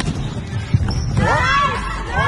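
Indoor volleyball rally in a sports hall: one sharp hit of the ball a little before halfway over a low rumbling hall din, then a run of short squeaks that rise and fall in pitch, typical of shoes on the court floor.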